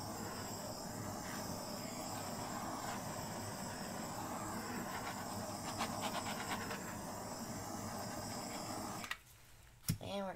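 Small handheld torch flame hissing steadily as it is passed over a wet acrylic paint pour, then shut off about a second before the end.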